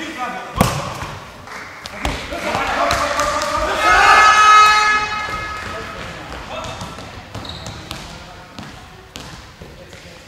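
Indoor handball game sounds: a sharp thud just after the start, then voices shouting, swelling to a loud held shout about four seconds in. A handball bouncing on the hall floor a few times in the later seconds.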